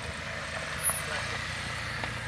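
Dodge Journey SUV stopped on a dirt road with its engine running, a steady low rumble. A short, sharp sound stands out about a second in.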